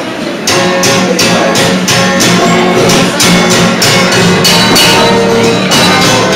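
Live band music starts about half a second in, led by a strummed guitar in a steady, even rhythm.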